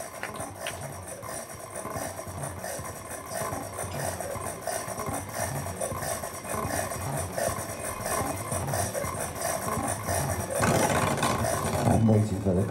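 Dense, rattling electronic noise texture from a live band's PA, with crackle from the recording. It swells louder near the end.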